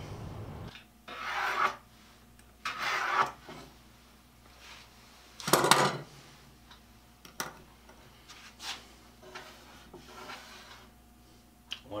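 Two short scraping rubs on a wooden board, then a louder knock about halfway through and a few faint taps: a straightedge and pencil being slid, set down and drawn along the board while marking layout lines.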